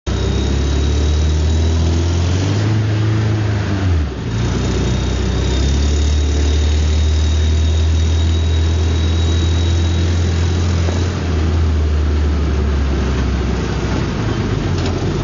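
Suzuki Samurai's four-cylinder engine running while driving, heard from inside the vehicle. The engine pitch climbs a couple of seconds in, falls away sharply at about four seconds, then holds steady.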